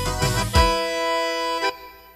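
Live forró band music coming to an end: the beat stops about half a second in and a final held chord rings on, then cuts off shortly before the end.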